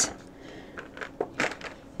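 A few faint light clicks and rattles of small plastic vials shifting in a clear plastic vial storage case as it is lifted and tilted, about a second in.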